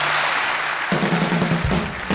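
Live studio band striking up a walk-on tune: drums with a wash of cymbals first, then the band comes in with held chords about a second in.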